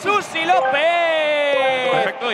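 A sports commentator's voice in drawn-out, excited shouts, one held note slowly falling for over a second, as in a stretched-out goal call.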